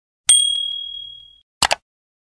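Subscribe-animation sound effects: a click with a bright bell ding that rings and fades over about a second, as the notification bell icon is switched on, then a quick double click near the end.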